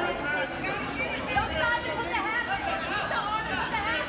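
Many voices talking over one another in a gym: the indistinct chatter of spectators around a wrestling mat.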